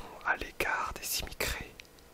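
Whispered French speech: a text being read aloud in a whisper, in short phrases that fall quiet near the end.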